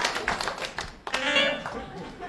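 Audience applause dying away into scattered claps over the first second. A brief pitched sound follows about a second in.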